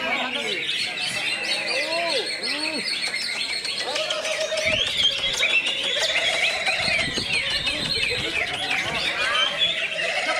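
Cucak ijo (greater green leafbirds) singing over one another: many rapid chirps, trills and whistled slurs at once, with people's voices underneath.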